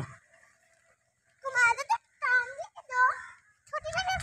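A young girl's voice calling out three times in short, high, pitch-bending calls, after about a second of near silence.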